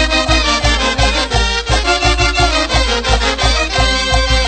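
Latin dance music with a steady bass beat, about two to three beats a second, under a dense band texture.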